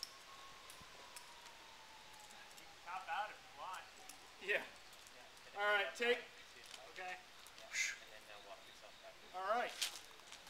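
Indistinct talking from people at the foot of the climb, in short broken phrases from about three seconds in. Before that, a faint steady high tone slowly sinks in pitch and fades.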